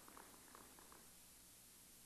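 Near silence in a large hall, with a few faint, scattered claps as applause dies away in the first second.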